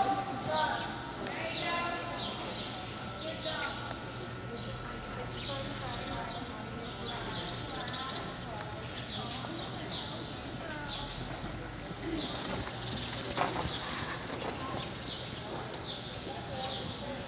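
Arabian show horses trotting on the arena's dirt footing, their hoofbeats under the talk of nearby spectators, with short high chirps repeating about twice a second.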